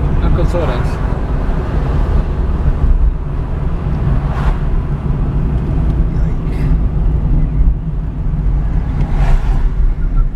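Steady low rumble of a car's engine and tyres on the road, heard from inside the cabin while driving. Two brief swells of noise rise over it, about four and a half seconds in and again near the end.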